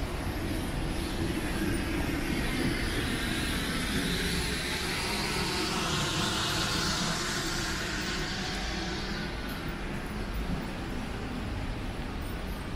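Street background noise with an unseen vehicle passing. Its hiss builds to a peak about halfway through and then fades away.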